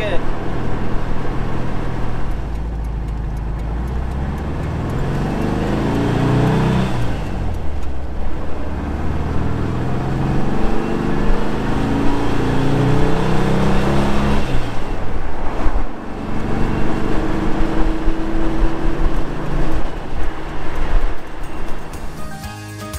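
1955 Porsche 356 Pre-A Speedster's air-cooled flat-four engine pulling the car along, heard from the open cockpit. The engine pitch climbs, drops at a gear change about seven seconds in, climbs again, and drops at another change about fifteen seconds in before running steadier.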